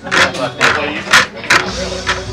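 Pool balls clacking against each other and the triangle rack as the balls are racked: four sharp clicks about half a second apart, over background room chatter.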